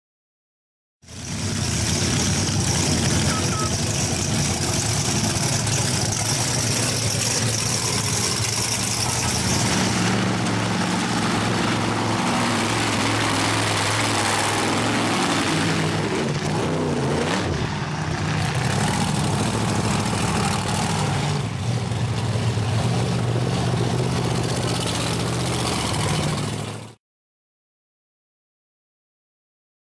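Monster truck engines running, with a rev that rises and falls partway through. The sound changes character about ten seconds in and again past twenty seconds, as if from separate takes. It starts about a second in and stops shortly before the end.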